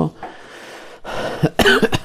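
A man coughs about a second in, a short rough burst after a faint breath.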